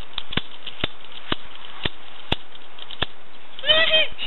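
Toy revolver clicking as its trigger is pulled again and again, about one sharp click every half second, over a steady hiss. Near the end a child's high-pitched voice comes in.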